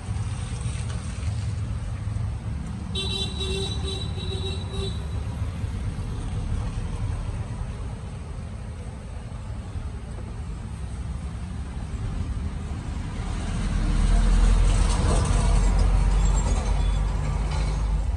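Street traffic: a steady low rumble of passing vehicles, with a vehicle horn sounding for about two seconds around three seconds in. A heavier vehicle passes close from about fourteen seconds, and the rumble grows louder before easing near the end.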